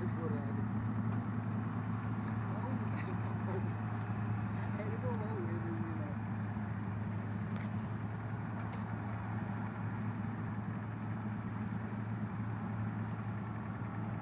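Heavy diesel engines of dump trucks and a Cat D7R bulldozer running as a steady low hum. Voices talk briefly a couple of times.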